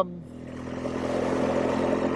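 BMW motorcycle engine running steadily while the bike is ridden at low speed, getting louder over the first second and then holding level.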